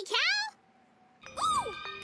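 High-pitched cartoon voice giving wordless cries that swoop up and down in pitch: one trailing off about half a second in, and another after a short pause about a second and a half in.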